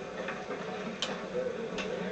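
A few soft clicks, about three quarters of a second apart, over a low murmur of voices.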